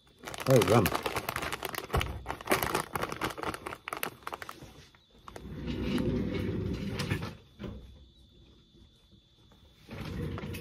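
Crinkling and crackling of a plastic pork-rind snack bag being handled, in quick irregular crackles over the first few seconds, with a short hummed 'mm' near the start.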